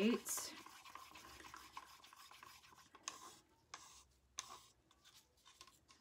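Faint scraping of a stir stick in a plastic cup as acrylic pouring paint is mixed, with a few short knocks and scrapes about three to four and a half seconds in.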